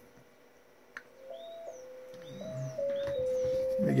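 JT65 digital-mode transmission audio: a single pure tone that jumps between a few close pitches every third of a second or so, starting about a second in after a click, as the transceiver keys up on a 1-watt 20-metre transmission. Faint short high chirps sound over it.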